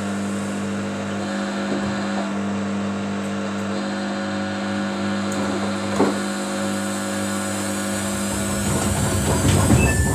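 Samsung front-loading washing machine running a wash: its motor hums steadily as the drum turns the soapy load. There is a single knock about six seconds in, and near the end the sound grows louder and more uneven, with a short beep from the control panel.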